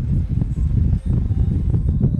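Wind buffeting the microphone and road noise in an open convertible at highway speed: a loud, uneven low rumble.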